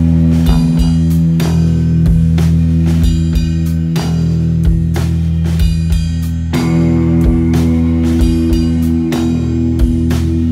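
A rock band playing live: electric guitar holding steady, sustained chords over a drum kit keeping a regular beat.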